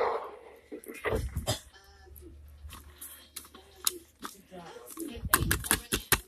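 Plastic action figure being handled: scattered clicks and knocks of hard plastic, in a dense cluster near the end, with a faint, unclear voice in the middle.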